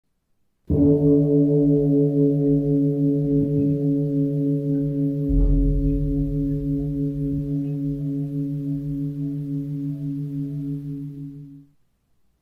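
A deep struck bell rings out once and slowly dies away over about eleven seconds, its tone wavering with a slow beat. A low bump and rumble comes in underneath about halfway through, and the ringing cuts off near the end.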